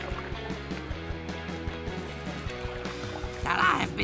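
Background cartoon music with held notes over a steady low beat; a voice begins speaking near the end.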